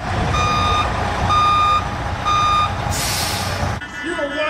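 Heavy vehicle's reversing alarm beeping three times, about once a second, over a low engine rumble, followed near the end by a short burst of hissing air.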